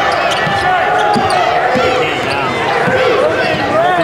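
Basketball dribbled on a hardwood court during live play, with voices carrying in the arena.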